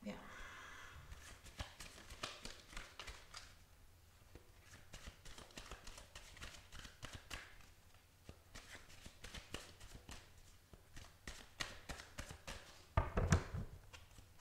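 A tarot deck being shuffled by hand: a run of quick, irregular card clicks and flutters, with one louder thump near the end.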